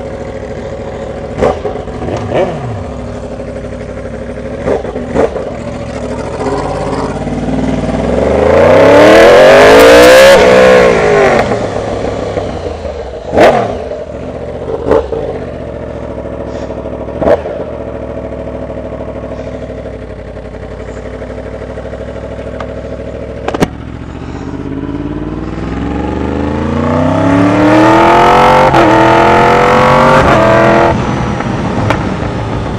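Sport motorcycle engine heard from on the bike, revving up hard with rising pitch about nine seconds in, dropping back, running steadily for a while, then climbing again in a second acceleration near the end. A few short sharp knocks are heard along the way.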